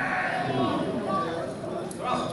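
Several voices shouting and calling out across a football pitch during open play, overlapping one another.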